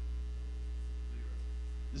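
Steady electrical mains hum: a low, unchanging hum with a row of fainter, evenly spaced higher overtones.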